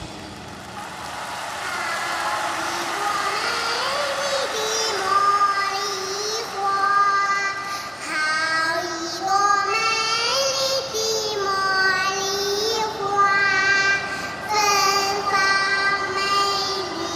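A high solo voice singing a slow melody, holding notes of about a second each and sliding between them.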